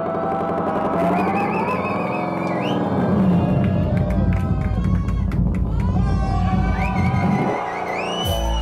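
Live music from an acoustic guitar played through effects pedals, with a drum kit, playing continuously; the bass drops out briefly near the end.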